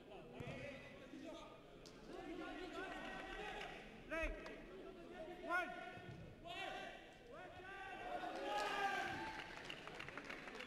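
Players and coaches shouting across an indoor minifootball pitch, with a few short thumps of the ball being played. The loudest shouts come about four and five and a half seconds in.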